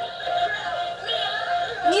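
L.O.L. Surprise! Remix toy record player playing its figure's song, a short clip of sung pop music, as the miniature record is set on its turntable.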